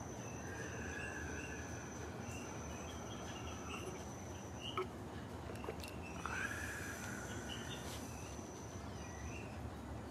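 Outdoor ambience of an insect singing one steady high-pitched trill that stops for a moment midway and then resumes, with faint bird calls under it and a couple of small clicks near the middle.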